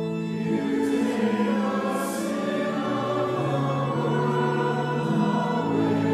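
A group of voices singing a slow liturgical chant or hymn in long held notes.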